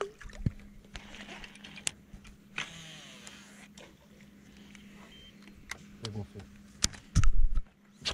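Quiet outdoor fishing ambience: a faint steady low hum with scattered clicks and knocks of rod and gear handling, faint distant voices, and a short, loud low rumble near the end.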